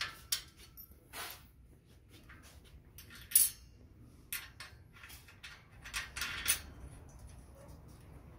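Metal hardware being handled: scattered clicks and clinks as hex nuts and bolts are fitted to a steel table-leg bracket, with one louder knock about three and a half seconds in.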